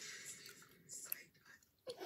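Faint whispering, breathy and without voiced tone, with a few small clicks.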